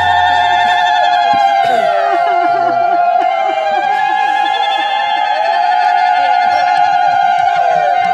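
Bengali kirtan music: a high, wavering note held unbroken throughout, over a gliding, ornamented melody, with almost no drumming.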